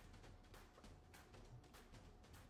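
Near silence: faint background music with soft, regular beats about three times a second.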